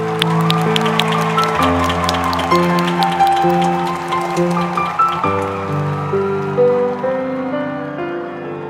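Grand piano playing slow, held chords, with audience applause over the first half that thins out about five seconds in.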